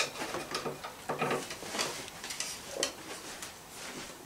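Irregular light clicks, taps and scrapes of small art supplies being handled, as a stick of charcoal is picked out.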